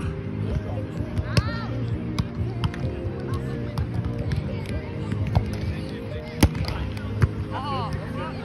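A volleyball struck by players' hands several times in a rally: sharp slaps, the loudest a little past six seconds in, over steady music, with short shouted calls.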